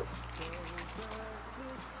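Soft background music with a steady low hum, and liquid sloshing in a plastic spray bottle as it is shaken to mix its separated oil and water layers.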